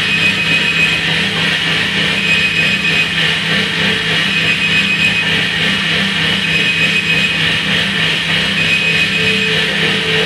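Improvised electronic noise music: a dense, unbroken drone with a steady low hum under it and a thin high tone that comes and goes, joined by a held mid-pitched tone near the end.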